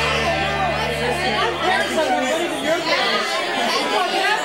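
A roomful of students chattering at once, many voices overlapping with no single speaker standing out. Rock music runs under the chatter at first and fades out about halfway through.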